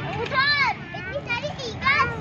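Young children's high-pitched voices talking and calling out excitedly as they play.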